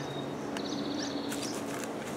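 A faint, high, rapid trill from a small animal, starting about half a second in and lasting about a second.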